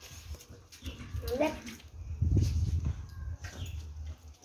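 A pitbull-type dog close to the microphone making a low, rough sound for about a second, just past the middle, while competing for pieces of chicken.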